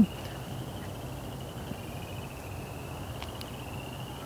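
Crickets trilling steadily: two high, finely pulsed trills at slightly different pitches overlap, over a faint low hum.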